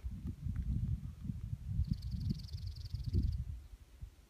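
Wind buffeting the microphone in an irregular low rumble. About halfway through, a small animal gives a high, rapid trill lasting about a second and a half.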